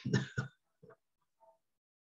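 A man's two quick throat-clearing sounds in the first half second, then silence apart from two faint blips, heard over a video-call connection.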